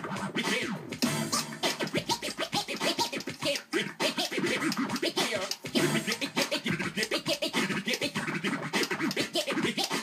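Vinyl record scratched by hand on a Technics turntable and played through a DJ mixer. Rapid back-and-forth scratches slide the pitch up and down, chopped into quick cuts with the fader throughout.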